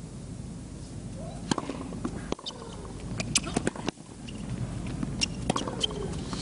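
Tennis crowd murmuring between points, with scattered short sharp clicks and knocks.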